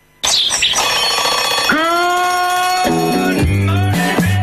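Programme intro jingle: a short alarm-clock bell ring, then music with a long held chord, joined about three seconds in by a repeating bass line.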